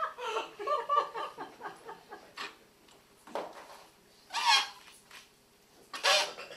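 Improvising vocal choir making short, choppy vocal sounds, several a second at first, then sparser, with a rising vocal cry about four and a half seconds in.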